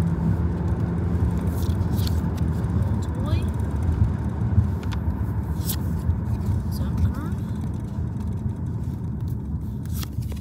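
Steady low road rumble inside a moving car's cabin, with scattered light clicks and rustles of trading cards being handled.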